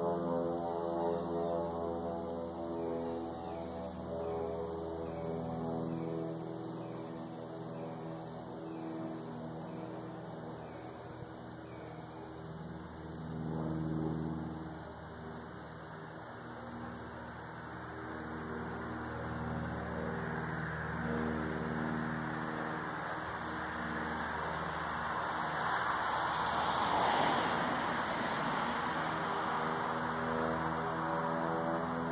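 Insects, likely crickets, chirping in a steady high pulse about twice a second over a low, even mechanical drone. Near the end a rushing sound swells and fades.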